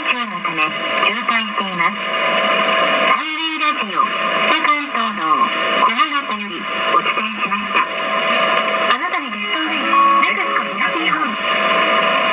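A Japanese Highway Radio traffic bulletin: an announcer's voice reading a congestion report and the station sign-off, heard over a low-fidelity AM roadside radio broadcast with steady hiss and a brief warbling interference about three seconds in.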